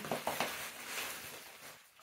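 Clear plastic wrapping rustling and crinkling as an item is unwrapped by hand, with a few sharp crackles at the start, then fading away.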